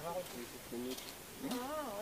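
Faint human voices with short, pitched vocal sounds, ending in a wavering, drawn-out voiced sound near the end.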